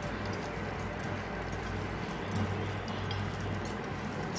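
A hand mixing chicken pieces in marinade in a steel bowl, with soft handling noise and faint light clinks against the steel, over a steady low hum.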